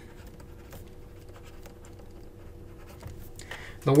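Faint scratching and light tapping of a stylus writing by hand on a tablet.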